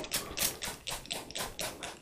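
Water from a watering can pattering onto compost: a run of light, irregular taps, about five a second.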